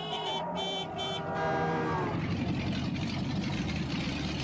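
Car engine sound effect with high-pitched squealing in the first second, giving way about two seconds in to steady engine and road noise.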